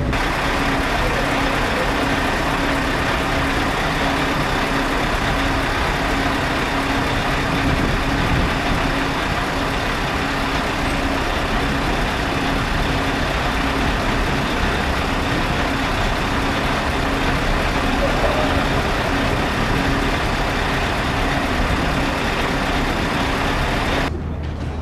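Engine running steadily, with dense mechanical noise and a regularly pulsing hum.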